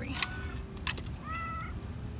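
Domestic cat meowing, with a short clear call a little over a second in and a fainter one just before; a couple of light clicks between.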